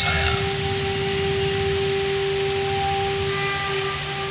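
A single steady held musical note, lasting about four seconds, from the show's soundtrack, over an even hiss.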